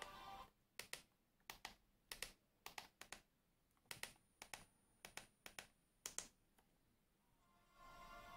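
About a dozen sharp clicks, some in quick pairs, of buttons pressed on a handheld remote, over near silence. Faint soundtrack music from the TV fades out just at the start and comes back near the end.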